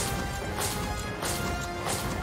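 Heavy metallic stomps of marching Cybermen in a TV soundtrack, about two a second, with orchestral music playing under them.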